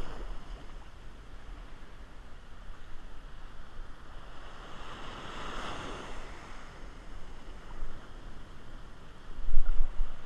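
Small surf washing up a sandy beach, with one wave rushing up the sand a little past the middle, over a steady low rumble of wind on the microphone. A loud low rumble comes just before the end.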